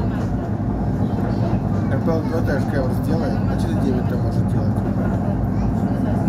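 Steady low rumble of an ER9-series electric multiple unit running along the line, heard from inside the passenger car.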